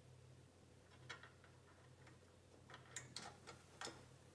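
Faint small clicks and taps of metal parts handled as a ZWO EAF focuser motor and its bracket are fitted onto a Feather Touch focuser: one click about a second in, then a quick cluster of clicks near the end.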